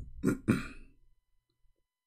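A man clears his throat in two short bursts within the first second.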